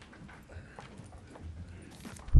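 Room full of people sitting back down: scattered soft knocks, shuffles and rustles of office chairs and feet.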